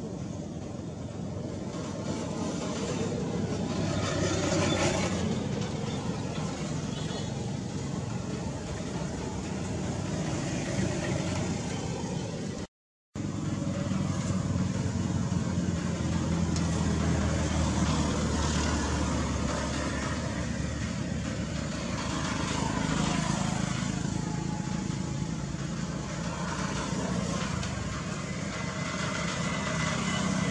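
Outdoor background noise with a motor vehicle engine running, its low hum strongest in the middle of the stretch, and a brief total dropout about halfway through.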